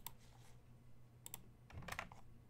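A few faint, sharp clicks of a computer mouse and keyboard, including a quick pair about a second and a quarter in.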